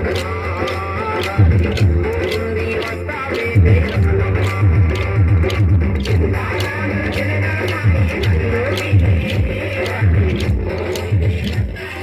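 Kolatam folk dance music: a sung melody over a heavy drum beat, with the sharp rhythmic clacks of the dancers' wooden kolatam sticks struck together.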